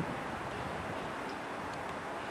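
Steady outdoor background noise, an even hiss with no distinct events, and a brief low bump right at the start.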